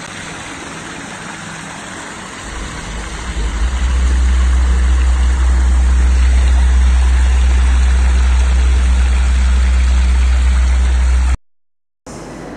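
Fountain jet splashing steadily into a tiled pool. A loud, steady low rumble builds in from about three seconds in and then dominates. The sound cuts off abruptly shortly before the end.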